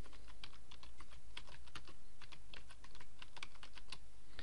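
Typing on a computer keyboard: a quick run of key clicks as a short phrase is typed, over a faint steady hum.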